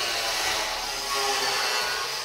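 A power tool running steadily in the workshop, a hiss with a faint whine in it.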